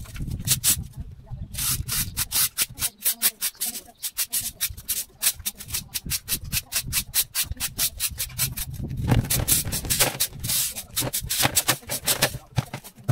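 A rake scraping cut hedge clippings along a concrete sidewalk in quick, repeated short strokes, several a second.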